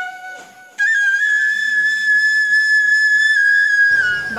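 Background flute music: a few stepped notes, then from about a second in one long, loud high note that is cut off abruptly just before the end.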